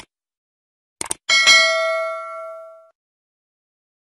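Sound effect of a subscribe-button animation: a mouse click, two quick clicks about a second later, then a bright bell ding that rings out and fades over about a second and a half.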